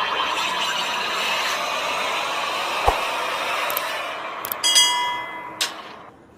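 Sound effects of an animated logo intro: a dense, swelling whoosh of noise, a sharp hit about halfway through, then a flurry of metallic clinks and ringing tones with another hit near the end.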